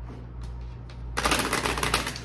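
A deck of tarot cards being shuffled: a quick, dense run of card flicks starting a little after one second in.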